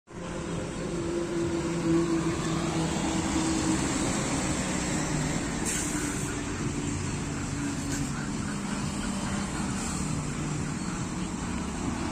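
A motor vehicle engine running steadily, with a low hum that drifts slightly in pitch.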